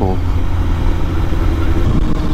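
Honda CBR929RR sport bike cruising on the highway, its inline-four engine running steadily under a loud, even rush of wind and road noise on the camera mic.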